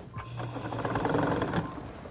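Electric sewing machine running for about a second and a half: a steady motor hum with rapid clatter, starting shortly after the beginning and dying away near the end.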